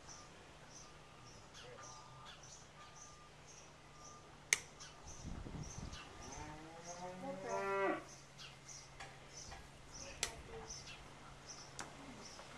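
Texas Longhorn cow mooing once about six seconds in, a single call about two seconds long rising in pitch and cutting off sharply. A sharp click comes a little before it.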